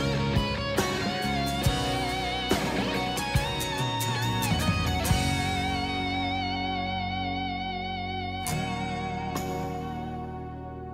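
Rock music from the animatronic show's soundtrack: electric guitar over sharp drum hits, which give way about halfway through to a long held guitar chord with wavering, vibrato notes that slowly fades out.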